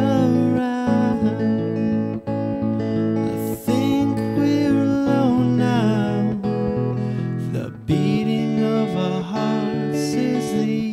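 A man singing to his own Fender Stratocaster guitar in a slow, soft, mellow style, with sustained gliding vocal notes over steady chords.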